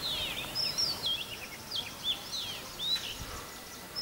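Small birds singing: a string of quick chirps and short whistled notes that slide up and down, over a faint steady outdoor hiss.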